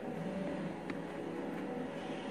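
A faint steady background hum with a single light tick about a second in.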